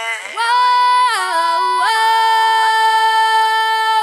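A female R&B voice singing unaccompanied, layered in harmony, holding long notes that step in pitch about one and two seconds in.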